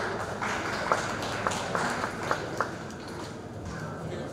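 Audience applauding in a hall, with several sharp, louder clicks standing out through the middle.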